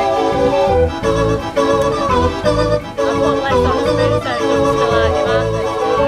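Belgian Decap dance organ playing a tune: pipe-organ melody over a steady beat from its drum kit.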